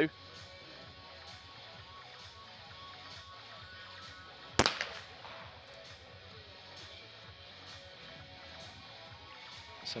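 A single 12-gauge shot from a Perazzi over-and-under trap shotgun about halfway through, with a short echo trailing off. It is one shot only: the clay is broken with the first barrel.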